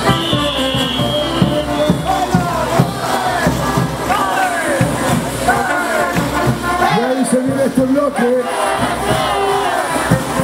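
Caporales parade music from a live band, with a crowd cheering and shouting over it.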